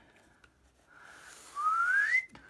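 A person whistles one short rising note in the second half. Under it, from about a second in, a faint scratchy hiss of a pencil drawn along a metal ruler's edge on paper.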